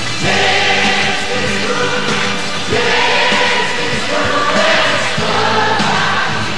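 Music: a choir singing long held phrases over live band accompaniment.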